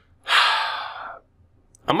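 A man's loud breathy sigh, a single exhale lasting about a second and fading away.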